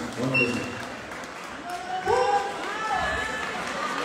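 Voices talking over a background of crowd noise.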